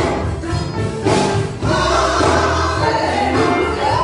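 A woman and a man singing a gospel song together into handheld microphones over an instrumental accompaniment with a steady bass line.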